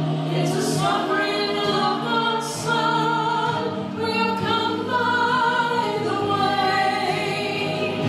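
Two women singing a gospel song together into microphones, amplified through the church sound system.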